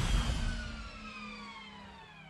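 Sound effect of a spacecraft landing dying away: a low rumble fades out while a high whine glides slowly down in pitch over a steady low hum.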